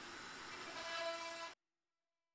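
Electric wood router running faintly as it flattens an epoxy and walnut slab: a steady hiss with a pitched whine that grows a little louder partway through. It cuts off suddenly about three-quarters of the way in.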